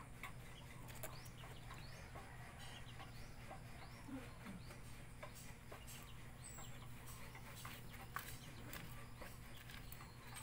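Faint birds chirping, short high calls scattered throughout, over a steady low hum, with a couple of sharp clicks about a second in and near the end.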